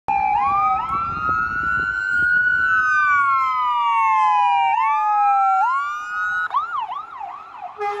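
Ambulance electronic siren in a slow wail, two siren tones sweeping up and down a little out of step, switching to a fast yelp about six and a half seconds in. A steady air-horn blast starts just at the end.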